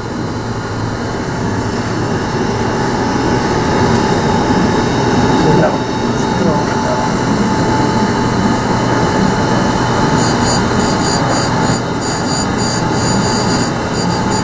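Victor 618 surface grinder running, its wheel spinning with a steady hum and a thin whine. From about ten seconds in, the wheel grinds a metal workpiece with a rapid, broken crackle as it makes contact on each pass.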